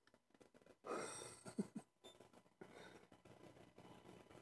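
Near silence: faint room tone, broken about a second in by one brief soft breathy hiss lasting under a second.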